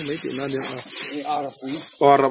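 A man talking, over a steady high hiss.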